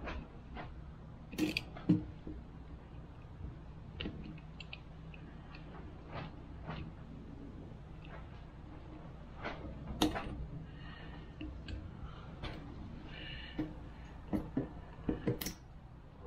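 Pliers pulling a cotter pin out of a castellated rear axle nut: scattered sharp metal clicks and taps, the loudest about two seconds and ten seconds in, with a cluster near the end, over a steady low hum.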